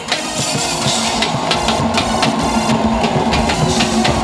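Live church praise music with a quick, steady drum beat, and the congregation singing and clapping along.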